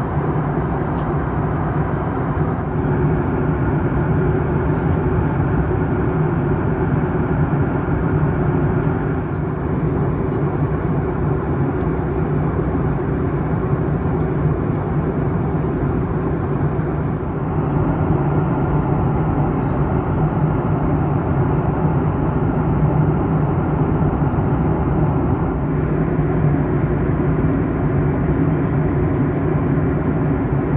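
Steady cabin noise of a Boeing 737 MAX 8 at cruise: a constant deep rush of airflow and engine drone, heard from a window seat beside the CFM LEAP-1B engine. Its tone shifts slightly a few times.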